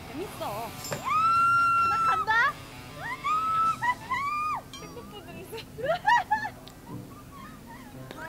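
Young women's high-pitched frightened cries and pleading in Korean, with a long drawn-out wail about a second in followed by shorter cries, over quiet background music.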